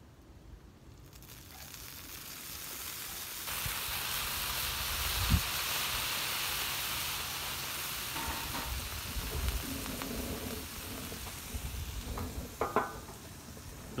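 Water sizzling and boiling off into steam on a hot Blackstone flat-top griddle around eggs cooking in metal egg rings, steaming the eggs. The sizzle builds from about a second in and grows louder a few seconds in, with a brief knock a little after five seconds.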